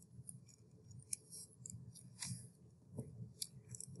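Faint, irregular scratching of a marker writing on a paper worksheet, a string of short strokes as words are written out.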